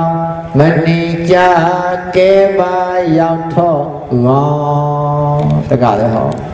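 Male voice chanting a Buddhist recitation in long held notes, the pitch stepping to a new level every half second to a second or so.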